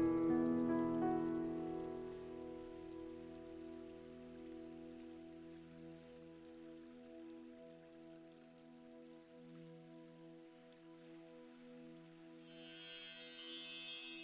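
Soft background music: a held, sustained chord slowly fading away, with high chime-like tinkling coming in near the end.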